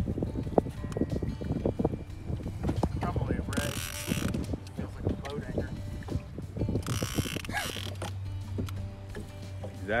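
Fishing reel clicking and rattling as the rod is worked against a heavy hooked sea turtle, with two brief hissing bursts about 3.5 and 7 seconds in.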